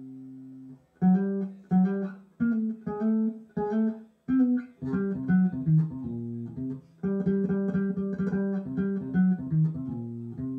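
Electric bass guitar playing a melody line: a held note dies away, then short separate notes with gaps from about a second in, and a quicker, busier run of notes over the last three seconds.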